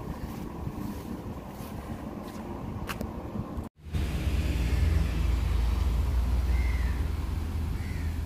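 Outdoor ambience: a steady low rumble that breaks off in a brief dropout nearly four seconds in, then comes back louder. Two short bird chirps sound near the end.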